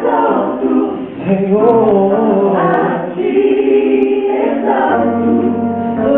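Gospel choir singing live in harmony, with a male lead voice holding and bending long notes over the group. A low bass note comes in about five seconds in.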